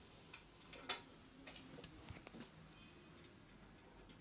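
Straight razor scraping stubble off a foam-lathered neck in short strokes: a few quick, crisp scrapes, the loudest about a second in, the rest coming close together over the next second and a half.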